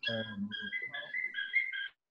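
A quick run of short, high, whistle-like notes at a few steady pitches, stepping up and down like a little tune, coming through the online call's audio. It cuts off abruptly near the end.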